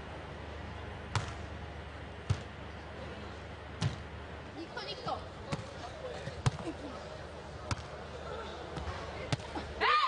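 A volleyball being struck by hands in a beach volleyball rally: a series of about seven sharp, separate hits a second or so apart, the loudest a little past halfway.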